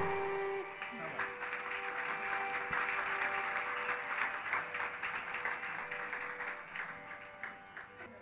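Scattered audience clapping that thins out and fades, over a steady drone held on a few pitches, as the concert's percussion stops.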